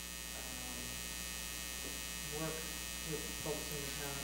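Steady electrical mains hum. About halfway through and again near the end, a couple of faint, short murmurs of a voice sound over it.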